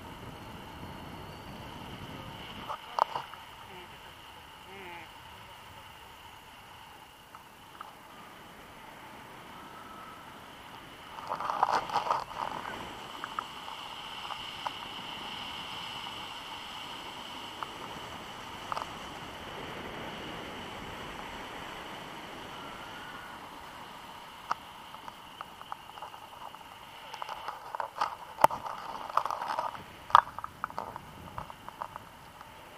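Wind rushing over an action camera's microphone during a paraglider flight: a steady hiss with a thin high tone, broken by short bursts of rustling and buffeting about three seconds in, around twelve seconds in and near the end.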